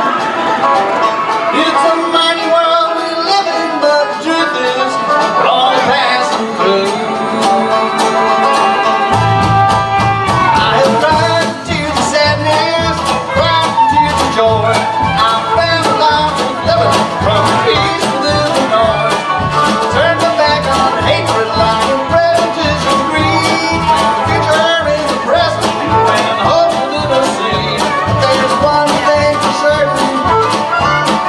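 Live bluegrass band playing an instrumental passage led by five-string banjo picking, with guitar and fiddle. About nine seconds in the upright bass comes in with a steady, regular beat.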